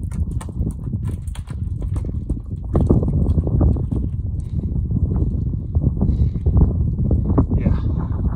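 Wind buffeting a handheld phone's microphone: a loud, uneven low rumble with scattered small clicks and knocks, getting louder about three seconds in.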